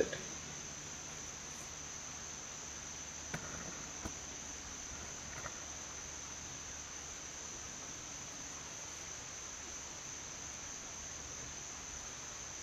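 Insects trilling steadily in one unbroken high tone, with a few faint clicks about three to five seconds in.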